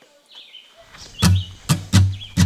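Guitar strumming starts the song's intro: after a faint background with a few high chirps, two loud strums land about a second in.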